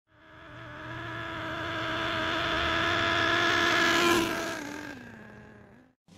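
The 4.8cc nitro engine of a 1/8-scale FS Racing 31801 RC monster truck buzzing at high revs as the truck approaches, growing louder, then passing about four seconds in, its pitch dropping as it fades away.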